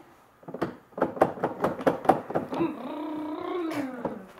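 People's voices: a quick run of laughs, then one drawn-out, pitched vocal sound like an "ooh" that rises, holds and falls away.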